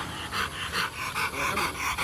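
Rottweiler panting rapidly, about five quick breaths a second.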